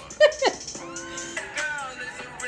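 A person's short high squeal sliding down in pitch, followed by a held, wavering note from the music playing.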